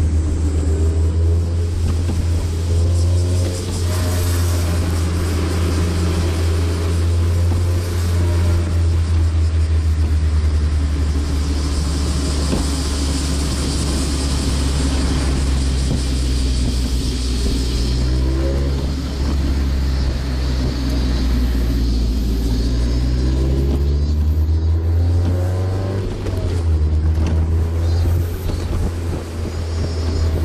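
Mazda NB Roadster's four-cylinder engine and exhaust heard from the open cockpit on the move, with a deep steady drone underneath and a note that rises and falls with the throttle; the pitch climbs for several seconds past the middle and drops back near the end. Wind hiss through the open top comes and goes, strongest around the middle.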